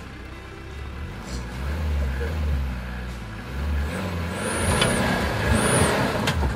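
Mitsubishi Pajero SUV's engine running as it pulls forward up a muddy slope, revving up and getting louder in the last couple of seconds.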